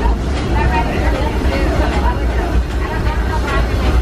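Passenger car of the Disneyland Railroad steam train rolling along the track: a steady low rumble, with people talking over it.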